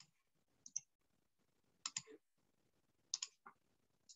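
Faint, sharp clicks: about three pairs, spread over a few seconds, over quiet room tone.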